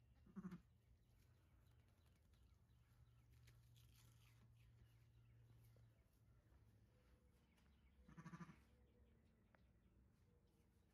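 A ewe's low bleats to her newborn lamb: a short one right at the start and a longer, quavering one about eight seconds in. A faint low hum runs under the first six seconds.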